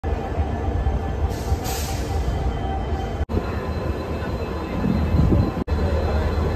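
Train running at a railway station: a steady low rumble with a brief hiss about one and a half seconds in. The sound drops out abruptly twice, near the middle and near the end.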